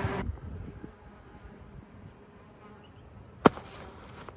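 A march fly buzzing close by, cut off abruptly a moment in, followed by a quiet stretch with faint buzzing and one sharp click near the end.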